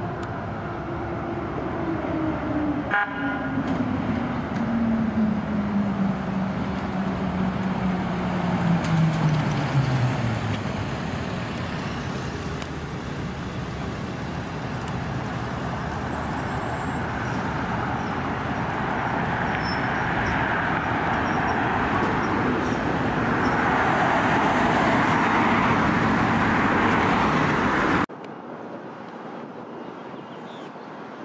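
Emergency vehicles on the road: a siren tone falls slowly in pitch over the first ten seconds, then steady road and engine noise as an ambulance drives by. The sound grows louder and then cuts off abruptly near the end.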